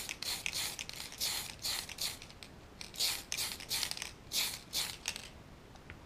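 An aerosol can of clear gloss being shaken, its mixing ball rattling inside at about three rattles a second before the shaking stops near the end.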